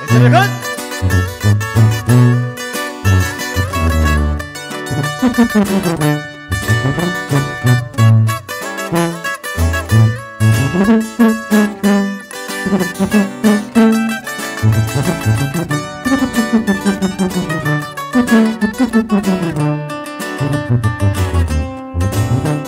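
Live corrido band playing an instrumental intro: an electric lead guitar picks a quick melody over a tuba bass line and drums.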